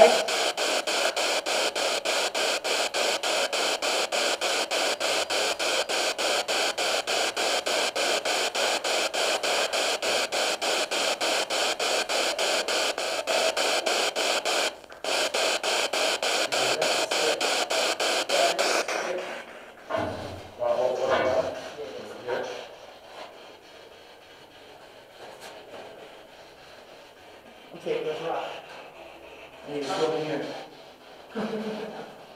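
Ghost-hunting spirit box sweeping through radio stations: a steady hiss of static chopped evenly several times a second, with fragments of radio sound. It drops out for a moment about halfway and stops about two-thirds of the way through. After that it is quieter, with a few faint, short sounds.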